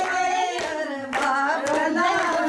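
Women singing a Haryanvi folk song, accompanied by hand claps about twice a second.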